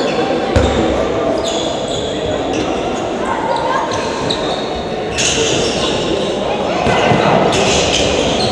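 Indoor handball play in a reverberant sports hall: the ball thuds on the wooden court about half a second in, sneakers squeak now and then, and voices of players and spectators call and murmur throughout.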